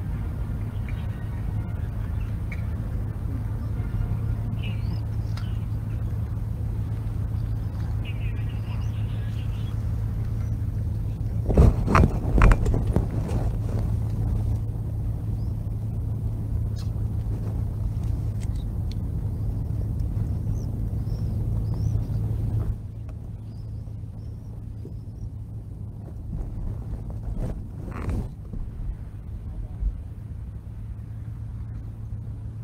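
Steady low hum of idling motorcade vehicles outdoors, with faint bird chirps. A quick run of loud knocks comes near the middle, and a single knock near the end. About three-quarters of the way through the background suddenly drops quieter.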